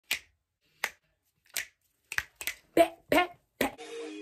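Sharp snaps like finger snapping: three about three-quarters of a second apart, then a quicker run of six short snaps and pops, some with a bit of pitch. Music starts just before the end.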